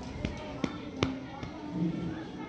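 Four light sharp taps or clicks, evenly spaced about 0.4 s apart, over a faint murmur of voices.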